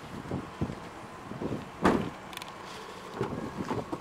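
Wind on the microphone with a few soft thumps, and one sharper knock about two seconds in.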